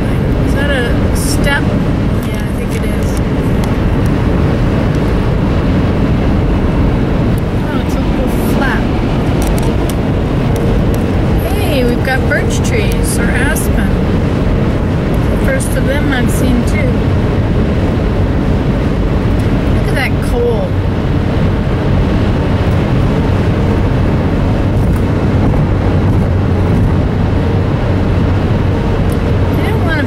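Steady road and engine noise of a car at highway speed, heard inside the cabin, with faint short higher sounds scattered through it.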